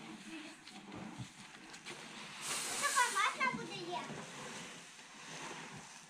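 Dry grain rushing as it is scooped and poured from a bucket, a hiss of about a second and a half in the middle, under quiet talk and a high voice.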